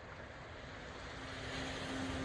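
A steady rushing noise that swells louder over the second half, with a low held note fading in about halfway: the opening of background music.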